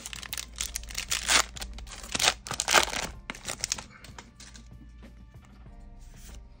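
Crinkling and rustling of trading-card booster pack wrappers and cards being handled, a busy run of short rustles for about four seconds that then dies down, with faint music underneath.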